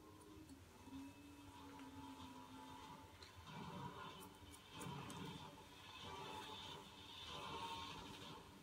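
Faint television sound playing in the room, with a few light clicks.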